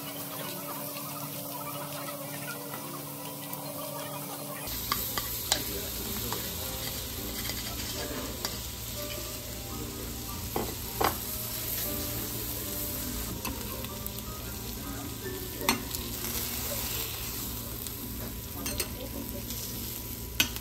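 Pork belly and shrimp sizzling on a hot teppan griddle while okonomiyaki batter is stirred with a spoon in a bowl and then spread on the griddle. A few sharp utensil clicks and knocks come through in the second half.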